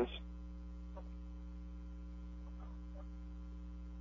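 Steady low mains hum, an electrical buzz with several overtones, on the radio broadcast's audio feed.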